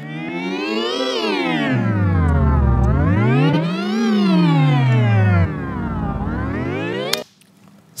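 Sustained synthesizer sound run through Logic Pro's Pitch Shifter, its semitone setting swept by a MIDI modifier, so the pitch glides up and down like a siren. It peaks about a second in and again about four seconds in, rises once more, then cuts off suddenly about seven seconds in.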